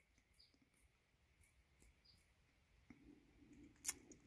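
Near silence: room tone with a few faint ticks, a faint low murmur from about three seconds in, and one sharper click just before the end.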